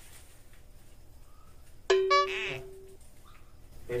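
A short musical sound effect: a sudden held tone about two seconds in, lasting about a second, with a quick fluttering trill above it, over quiet room tone.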